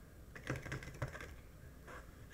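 Faint, rapid small clicks and taps for about a second, then one more click near the end.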